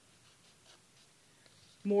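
Pen drawing on paper on a clipboard: faint, soft scratchy strokes. A woman's voice starts just before the end.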